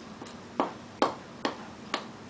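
A fork clinking against the side of a glass mixing bowl as dough ingredients are stirred: four sharp clinks, about two a second, each with a short ring.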